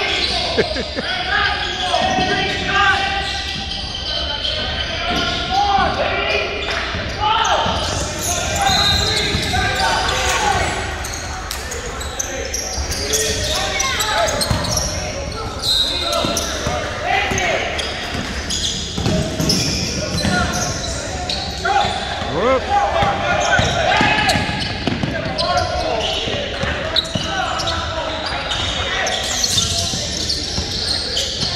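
Basketball game on a hardwood gym floor: the ball dribbled and bouncing in short repeated thuds, mixed with voices of players and spectators calling out, all echoing in a large gymnasium.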